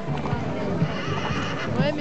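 A horse whinnies in the second half, a high, wavering call, over background music and chatter.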